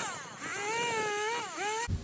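Two-stroke chainsaw running at high revs while cutting branches in a brush pile, its pitch dipping as the chain bites and climbing back, twice.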